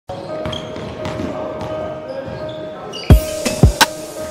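Intro music: a soft held tone with faint chimes, then about three seconds in two heavy low thuds of a basketball bouncing on a hardwood floor.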